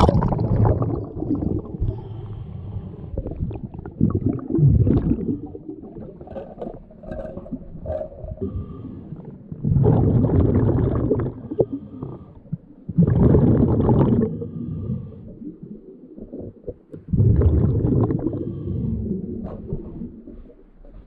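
A splash as the diver goes under, then underwater scuba breathing: exhaled air bubbling out of the regulator in loud bursts of about two seconds, a few seconds apart, with quieter bubbling and handling noise between them.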